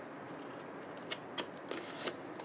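Scissors snipping a small wedge out of cardstock: three short, faint snips in the second half.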